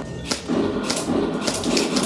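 Replica M4-style rifle at a shooting-arcade range fired in quick succession: four sharp shots about half a second apart.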